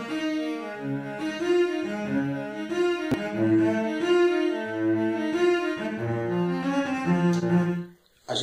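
Sampled cello from the free Project Alpine library playing a slow, simple melody with reverb. The Rescue MK2 plugin, which adds punch and stereo width, is switched in partway through. The playback cuts off just before the end.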